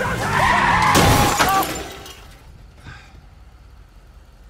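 A car's tyres screech under hard braking as it strikes a small robot, with a crunch and the shatter of breaking parts about a second in. It settles to a low in-car hum by about two seconds in.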